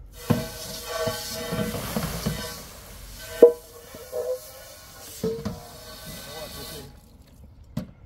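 Garden hose spraying water into a black Dutch pot, the water hissing and drumming on the metal, which rings with a steady tone through the spray. Sharp clanks as the pot is handled, the loudest about three and a half seconds in; the spray stops about seven seconds in.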